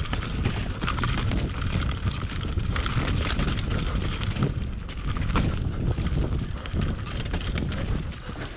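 Specialized Enduro Evo mountain bike descending a dirt trail at speed: tyres rolling over dirt and roots, with frequent sharp knocks and rattles from the chain and frame, and wind buffeting the microphone.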